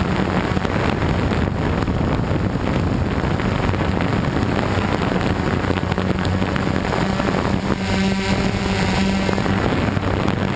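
DJI Flame Wheel F550 hexacopter's brushless motors and propellers droning steadily right by the onboard microphone, with wind rushing over the mic. A higher whine joins the drone for a couple of seconds near the end.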